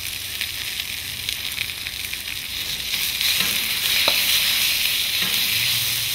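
Sliced Chinese yam sizzling in hot oil in a wok over a high flame, a steady hiss that grows louder about halfway through, with a couple of faint clicks.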